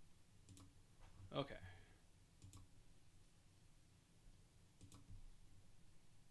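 A few faint single computer mouse clicks, spaced irregularly over several seconds, against near silence.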